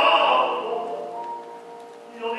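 Operatic tenor with grand piano accompaniment, the voice ending a sung phrase within the first second; the sound then dies away to a few soft sustained piano notes fading out.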